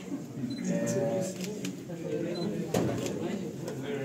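People talking in the background, with a few sharp clicks and one louder knock about three quarters of the way through.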